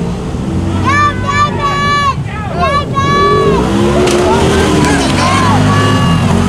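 Side-by-side UTV engines racing on a dirt course, the pitch climbing, holding and dropping again and again as the drivers go on and off the throttle over the jumps, with machines passing close near the end.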